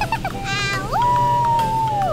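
A cartoon sound effect: short plinks, then a pitch that slides up into a long high held tone that falls away at the end, over background music.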